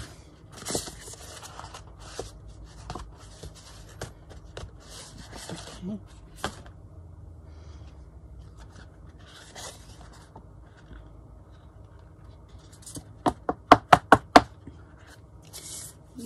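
Paper rustling and scraping as a sheet is peeled off a damp, spray-inked card and the card is handled on a cutting mat. Near the end comes a quick run of about eight sharp clicks.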